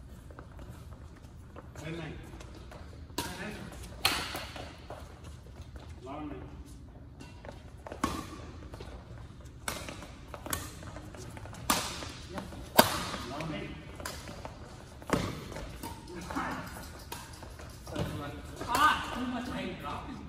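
Badminton rackets hitting a shuttlecock in a doubles rally: about eight sharp smacks at irregular gaps of one to four seconds.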